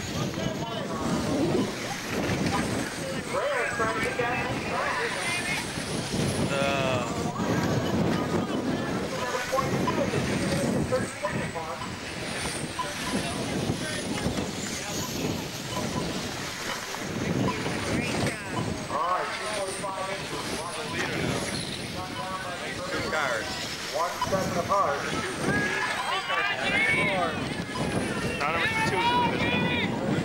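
Radio-controlled race cars circling an oval, their motors giving high whines that rise and fall as they pass, over a steady chatter of spectators' voices and some wind on the microphone.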